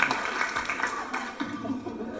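Audience laughter and scattered clapping fading away over the first second and a half.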